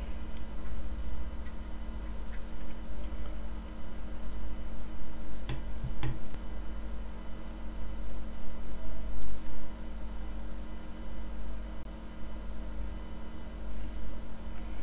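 Steady low electrical hum of a quiet room, with two light clinks about halfway through, half a second apart, amid the small handling sounds of watercolour painting.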